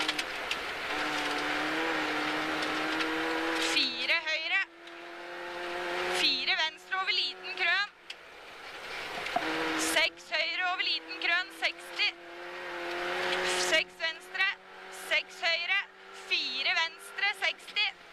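Rally car engine heard from inside the cabin, pulling hard as the car accelerates, its note climbing and then dropping back about four times, with road noise from the snowy surface underneath.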